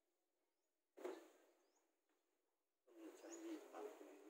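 Faint rustling of robe cloth being handled close by: a short burst about a second in and a longer one near the end. A small bird chirps faintly near the end.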